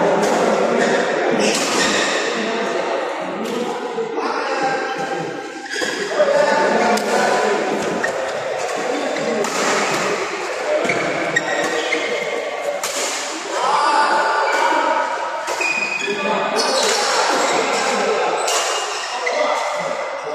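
Badminton rally in an echoing sports hall: rackets strike the shuttlecock again and again, each hit a short sharp crack, over the chatter of voices from around the courts.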